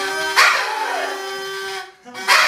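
Paper party horns blown, one steady honking tone held for nearly two seconds, with a short noisy blast joining about half a second in.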